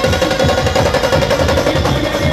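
Loud live band music: drums beaten in fast, dense strokes under a steady held melody note.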